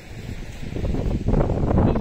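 Wind buffeting the microphone: a noisy rumble that grows louder about halfway through.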